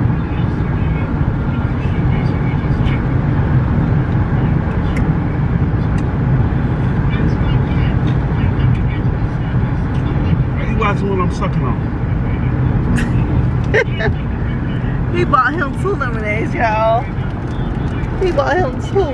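Steady low road and engine rumble heard inside a moving car's cabin. A person's voice comes in briefly about ten seconds in and again near the end.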